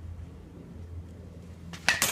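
A Marucci Hex full composite baseball bat striking a ball off a batting tee: one sharp crack near the end, over a low steady hum.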